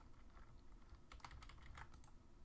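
A few faint clicks of computer keyboard keys in a quick run starting about a second in, over near-silent room tone.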